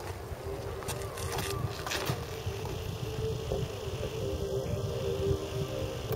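Wind rumbling on the microphone outdoors, with a faint steady hum and a few soft clicks in the first couple of seconds.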